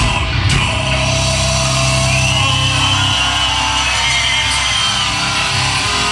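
Live heavy metal band playing loud, with distorted electric guitars, bass and drums.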